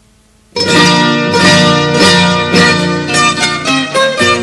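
An Aragonese jota played on plucked strings, a rondalla of bandurrias and guitars, starting abruptly about half a second in with quick, bright picked notes, after a faint hum.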